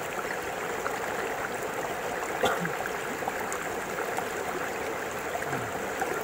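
Steady rush of flowing stream water.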